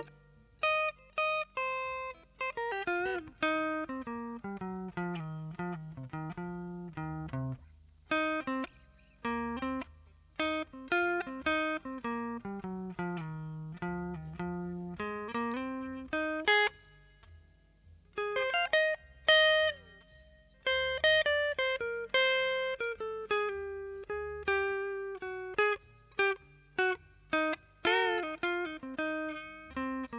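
Background music: a guitar picking a slow single-note melody, each note ringing and dying away, with a short pause a little past halfway.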